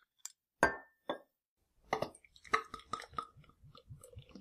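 Glass beer bottles clinking and knocking as they are handled: a few separate sharp clinks, one with a brief ring, then a quick run of small clinks and knocks in the second half.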